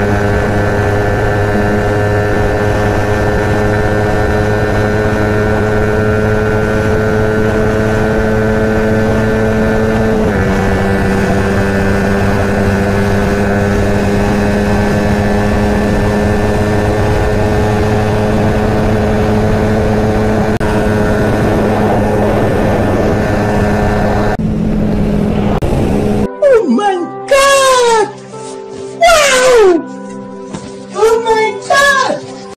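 Yamaha R15 V3's 155 cc single-cylinder engine running hard at high revs near top speed, its pitch creeping slowly upward, with a brief drop in pitch about ten seconds in. Near the end the engine sound cuts off abruptly and gives way to speech and music.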